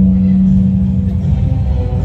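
Music: a deep gong note rings and fades away over about a second, above a continuous low rumble.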